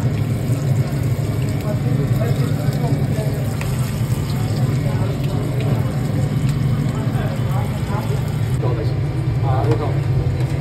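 Hot oil sizzling and bubbling in a commercial electric deep fryer as batter-coated vada are dropped in and fry, over a steady low hum.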